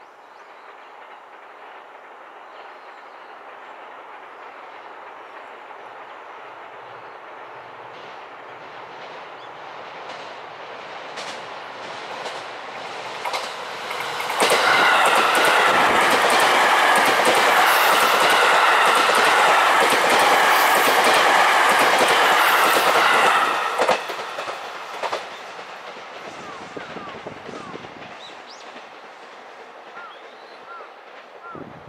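JR East E257 series electric express train passing close at speed: a rumble builds for about fourteen seconds, then comes a loud pass of about nine seconds with the wheels clicking over rail joints, and the sound fades away as it recedes.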